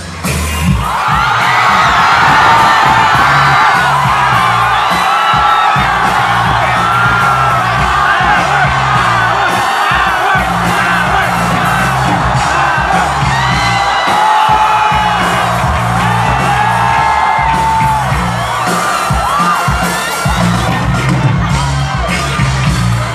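A live band's amplified music, with a pulsing bass line, under a large crowd screaming and cheering. The crowd noise swells in suddenly just after the start and stays loud throughout.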